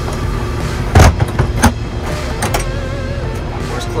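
Piaggio P180 Avanti cabin door being latched shut from inside: a loud clunk about a second in and a second clunk just after as the locking handle is turned, then lighter clicks.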